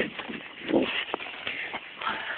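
Shuffling and scuffing with a few sharp knocks, and one short voice sound in the middle.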